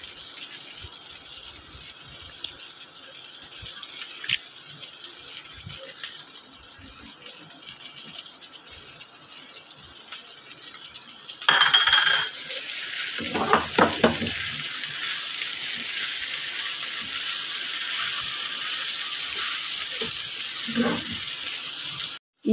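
Pasta sizzling in a frying pan over the flame, with the clicks and scrapes of a spatula stirring it against the pan. The sizzle grows louder about halfway through, when the stirring starts.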